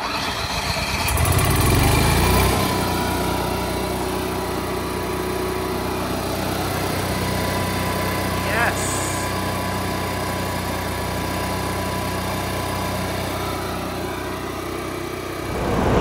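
Onan RV generator cranking and catching, with a loud surge in the first couple of seconds, then settling into a steady even run. It is the sign that the repaired generator starts and runs properly.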